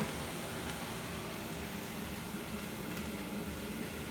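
Steady hiss and low hum of a kitchen gas stovetop, its burners lit under several simmering pots.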